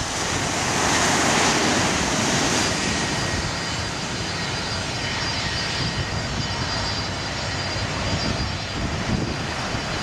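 Airplane engine noise: a steady rush with a thin high whine. It swells about a second or two in and then holds.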